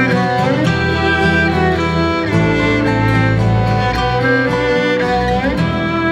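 Instrumental Celtic-style folk music: a fiddle carries the melody with sliding notes over acoustic guitar and low sustained bass tones.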